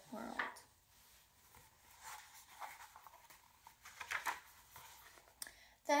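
Paper pages of a small paperback picture book being turned by hand: faint, soft rustles and a few brief crinkles in the middle of the pause and near the end.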